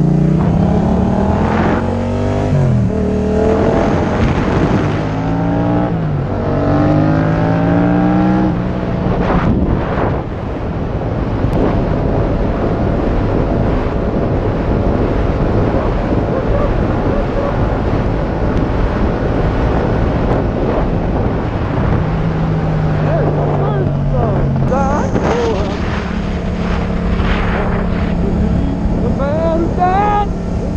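Yamaha FZ-07's parallel-twin engine accelerating through the gears, its pitch climbing and dropping back at each upshift over roughly the first nine seconds. It then settles to a steady drone with rushing wind as the bike cruises.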